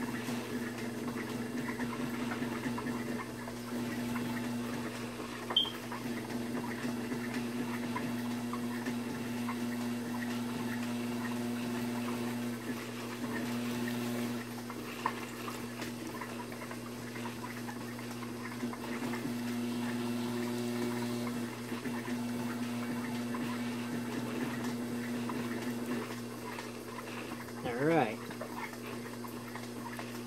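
Electric pottery wheel running with a steady motor hum while wet hands press and smooth a broad slab of clay on the wheel head, making a soft wet rubbing and squelching sound.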